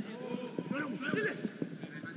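A wordless, pitch-bending voice from the soundtrack song, its notes arching up and down.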